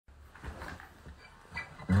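A few faint handling sounds, then an acoustic guitar chord strummed near the end and left ringing.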